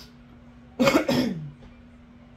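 A person clearing the throat with two quick coughs, about a second in.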